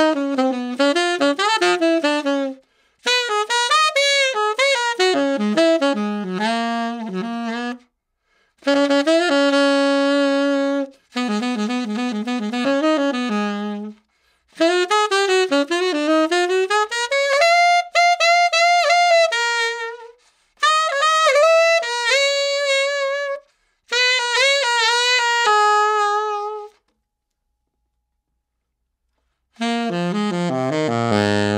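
Tenor saxophone played through a Drake Stubbie 7* metal mouthpiece, Dukoff-inspired, on a Rigotti Gold jazz reed: a run of solo jazz phrases with short breaths between them, then about three seconds of silence before the next phrase starts at the very end. The player hears a clear, clean response with a dark, warm colour.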